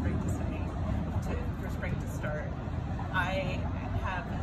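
A woman talking over a steady low background rumble, breaking into a brief laugh near the end.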